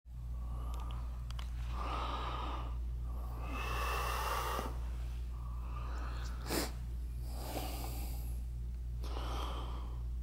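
A person breathing close to the microphone, a breath every second or two, with one short sharp sniff-like burst about two-thirds of the way through, over a steady low hum.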